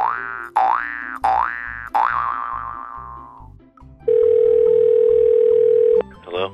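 Cartoon 'boing' sound effects over light background music: four quick springy rising glides, the last one wobbling and fading away. About four seconds in, a loud steady electronic tone starts and holds for roughly two seconds.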